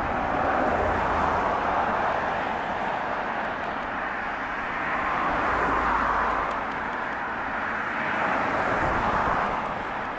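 Steady distant vehicle noise, a rushing hum that swells and fades about a second in, around six seconds and around nine seconds, with a low rumble underneath at times.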